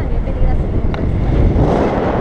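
Wind buffeting the camera microphone during a paraglider flight: a loud, uneven low rumble, with a single faint click about a second in.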